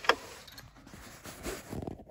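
Handling noise from a hand-held phone camera being moved around inside a car: a sharp knock at the start, then rustling and soft bumps near the end.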